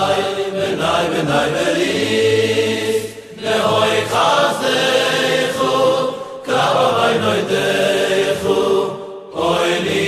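Voices singing a Vizhnitz Hasidic song in long sustained phrases, with brief breaks about three seconds in and again about nine seconds in.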